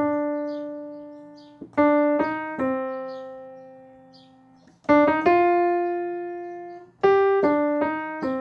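The song's solo melody played one note at a time on a Nord Stage keyboard's piano sound: four short phrases of struck notes, the last of each left to ring and fade before the next begins.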